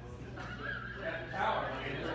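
Indistinct voices of people talking in a large room, one voice rising louder about one and a half seconds in.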